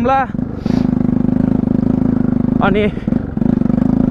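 Bajaj Pulsar NS 200 single-cylinder engine running at a low, steady pace on a rough dirt track. It drops off briefly about half a second in, then picks back up.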